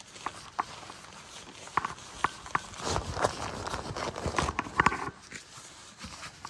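Synthetic fabric rustling and crinkling as an olive-green bag or cover is rolled up tightly by hand on an air mattress, with irregular short sharp crackles, busiest a little before the end.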